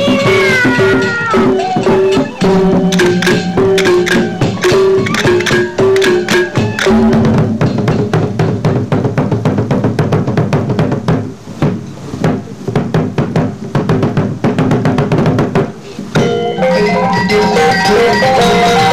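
Sasak gendang beleq ensemble playing for the Oncer dance: large double-headed drums and clashing cymbals under a held, wavering melody. About seven seconds in the melody drops away and dense, rapid drumming and cymbal strokes take over. Shortly before the end a different melodic passage with repeated notes comes in abruptly.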